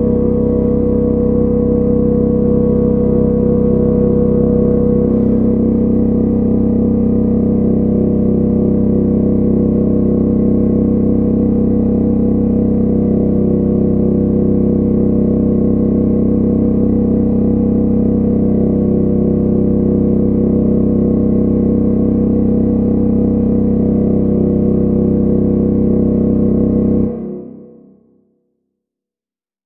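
Dungeon-synth music: thick, sustained synthesizer chords held steadily with little rhythm, ending in a quick fade near the end.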